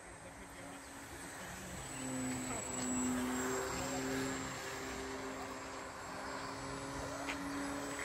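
Electric-powered 1:8 scale Spad VII model plane, with a 6S electric motor, flying past overhead: a steady propeller-and-motor drone that grows louder, is loudest about three seconds in, then fades as the plane moves away.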